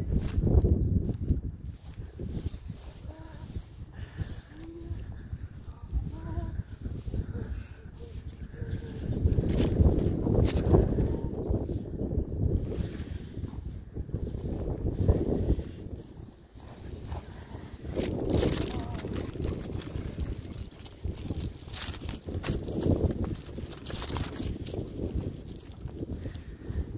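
Wind buffeting the microphone: an uneven low rumble that rises and falls in gusts, with faint voices underneath.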